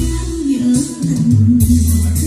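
Music played through Bose 601 Series II loudspeakers, with a very clear bass line of deep, held notes, a melody above it and a steady beat of high ticks.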